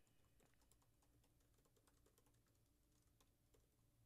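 Very faint computer keyboard typing: a scatter of quiet key clicks, close to silence.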